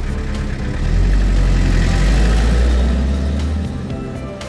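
A vintage car's engine running as the car pulls away, a steady low sound that fades near the end, with background music coming in.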